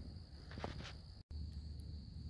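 Faint outdoor ambience: a thin steady high tone over a quiet hiss, with a brief faint rustle about half a second in. The sound cuts out for an instant a little past one second, then the same faint ambience resumes.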